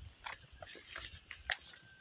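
Faint, irregular footsteps and scuffs on a dirt path.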